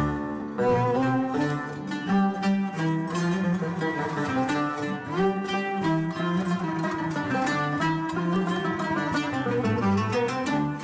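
Instrumental introduction of a Turkish classical şarkı in makam Uşşak. A small traditional ensemble plays plucked strings over a low pulse, with a frame drum in the group, and there is no voice yet.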